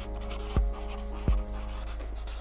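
Felt-tip marker writing on flip-chart paper, over soft background music with a steady low beat about every three-quarters of a second.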